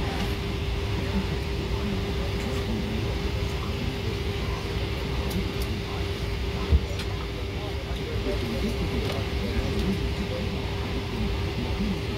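Steady cabin ventilation noise inside a parked Boeing 777-300ER, with a constant mid-pitched hum over a low rumble. A single sharp knock sounds a little past halfway.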